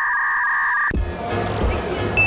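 Electronic editing sound effect: a flat beep made of two steady high tones held for about a second, a comic 'buffering' cue, cutting off suddenly. Background music with a low beat follows.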